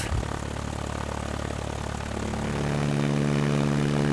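Stinson 108's piston engine and propeller running steadily as the plane lines up on the runway, getting louder about halfway through as power comes up for the takeoff roll.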